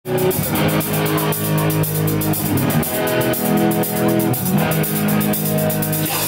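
Live rock band playing an instrumental passage: electric guitars and bass holding chords over a Yamaha drum kit, with a steady beat on the cymbals. No singing yet.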